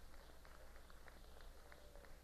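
Near silence: faint hiss and a low steady hum, with scattered faint ticks.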